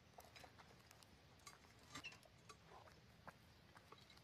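Faint, scattered metal clinks and knocks of a lug wrench working a car's wheel nuts.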